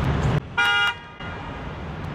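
A car horn gives one short, steady toot about half a second in, over low street traffic noise.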